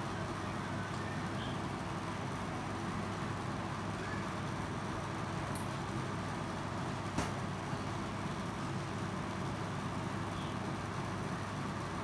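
Steady low background hum with no clear source, broken by one faint click about seven seconds in.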